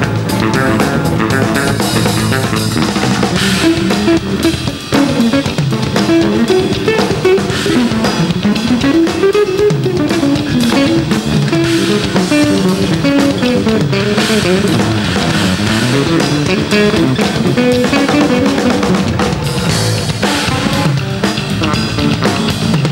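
Live band music: electric bass guitars playing melodic lines that run up and down over a drum kit beat, with a brief drop in level about five seconds in.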